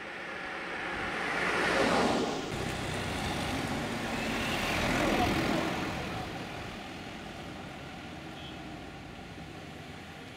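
Road traffic: a car passes close, loudest about two seconds in, then busier street traffic with another vehicle going by around five seconds in, settling to a steady hum of engines and tyres.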